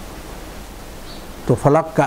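Steady background hiss with nothing else over it, then a man's voice starts speaking about one and a half seconds in.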